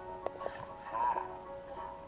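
Music with a voice over it: a Gatorade TV commercial's soundtrack played through a Lenovo laptop's speakers.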